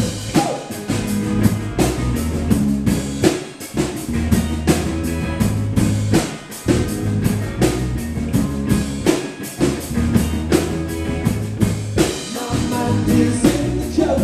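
Live rock band playing a song: drum kit keeping a steady beat under amplified guitar and bass.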